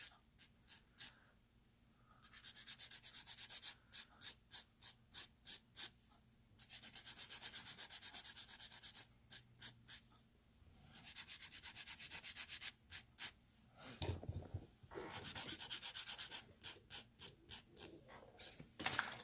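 Hand nail file scraping across the free edge of a powder nail enhancement in runs of quick, even strokes, broken by short pauses, while the nail is shaped straight.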